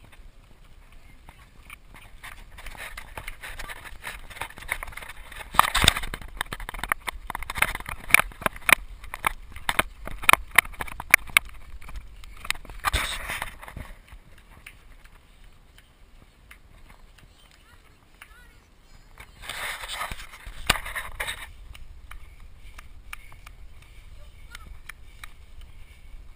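Moving bicycle and its mounted camera rattling over a bumpy paved path: irregular sharp knocks and clicks, thickest through the middle, with a few louder rushing noise surges about six seconds in, about thirteen seconds in and around twenty seconds in.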